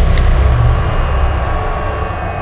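Deep low rumble slowly fading, the drawn-out tail of a cinematic boom in a music video's intro, with a faint click just after the start.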